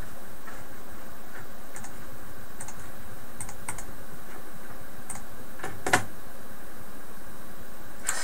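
A few scattered clicks of a computer mouse and keyboard, the loudest about six seconds in, over a steady hiss.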